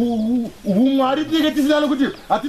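A man's voice in two long, wavering held tones with no clear words, like humming or drawn-out intoning, the second slightly higher.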